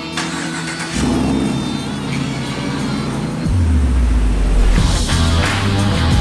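A 2019 Ram 1500 Rebel pickup's engine running as the truck pulls out, under rock background music with a heavy bass line that comes in strongly about halfway through.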